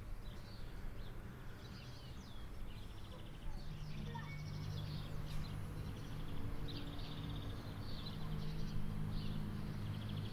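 Many birds chirping and twittering in a tree, with short buzzy trills, in an outdoor ambience recording. A low steady hum comes in about three and a half seconds in under the birdsong.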